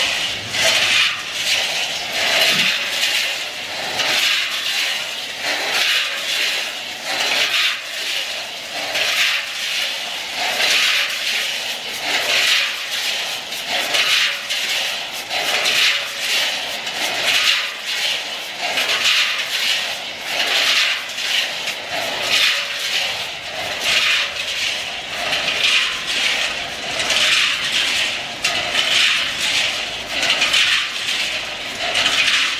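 Raw peanuts tumbling and rattling against the inside of a rotating stainless-steel spiral mixing drum: a continuous scraping rush that swells and eases in a rough rhythm as the drum turns.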